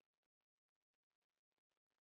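Near silence: the sound track is essentially muted.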